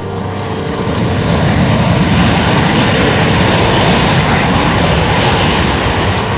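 Twin engines of a Sukhoi fighter jet running at high thrust on its takeoff roll. A loud, dense jet noise swells over the first second and then holds steady.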